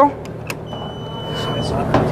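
Election Commission EVM control unit being switched on: a sharp switch click, then a steady high electronic beep lasting about a second. A low mechanical whirr then grows louder as the machine starts its power-on self-test.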